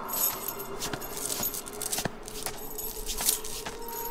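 Metal shackle chains clinking and jangling in scattered light taps as a chained, barefoot man moves, over a faint steady hum.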